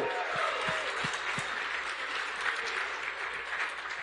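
Audience applauding, with a few voices mixed in, dying down gradually.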